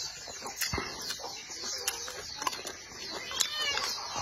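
Close-miked chewing of shell-on shrimp and rice, with sharp clicks of wooden chopsticks against a porcelain bowl. A few short animal calls and a run of high, repeated chirps sound in the background.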